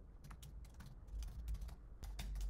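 Computer keyboard typing: a quick run of about a dozen faint key clicks as a word is typed.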